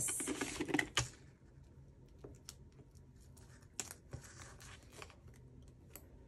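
Paper sticker sheet being handled: a rustle of the sheet in the first second, then sparse small clicks and crinkles as stickers are peeled off and pressed onto a planner page, with a brief rustle about four seconds in.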